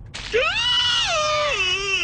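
A long, drawn-out whining cry in a high-pitched voice. It rises at the start, holds steady for about a second, then drops in two steps near the end.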